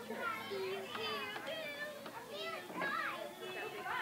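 Young children's voices chattering and calling out at play, several high-pitched voices overlapping.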